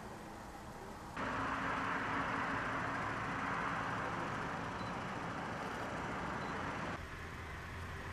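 Steady road traffic noise from cars and their engines, an even wash of sound with no distinct events. It rises abruptly about a second in and drops back near the end.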